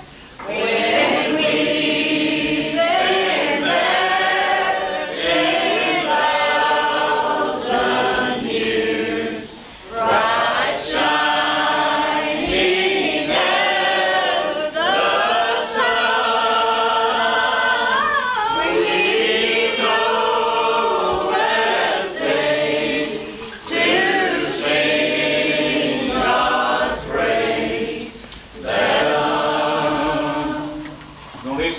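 A group of people singing together without instruments, in long held notes, with short breaks between phrases.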